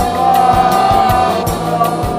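Background music: held, choir-like singing over a steady beat of about three strokes a second.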